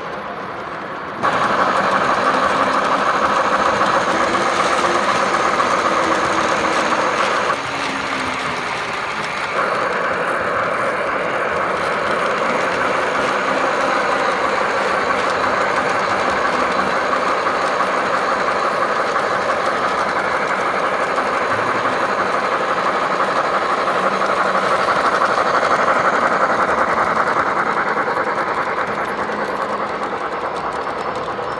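Large-scale G-gauge model trains, a Big Boy locomotive model among them, running on the layout's track with a steady rolling and running-gear noise. The sound cuts in abruptly about a second in and dips briefly around eight to nine seconds.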